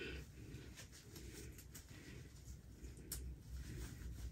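Faint rustling of a lace front wig's hair and lace as hands pull it onto the head and adjust it, with a faint click about three seconds in.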